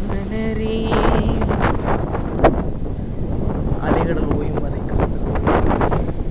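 Wind blowing across the microphone as a steady rumble, with waves breaking on a sandy shore underneath it.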